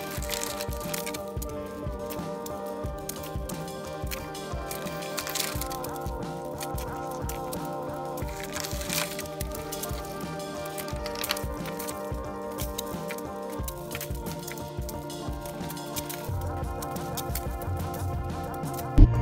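Background music: a steady instrumental track with a regular beat.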